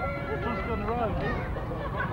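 Several children's high-pitched voices calling and chattering over one another, with no clear words.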